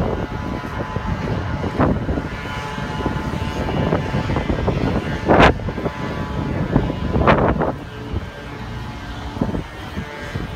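Wind buffeting the microphone over a steady low hum, with two sharper gusts about five and a half and seven seconds in.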